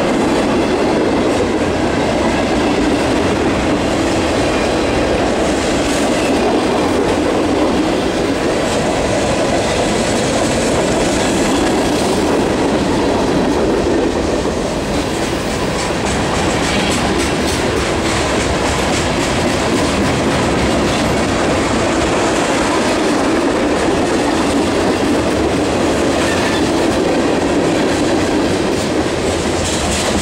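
Freight cars of a manifest train rolling past: a steady rumble of steel wheels on the rails, with the repeated clack of wheels over rail joints.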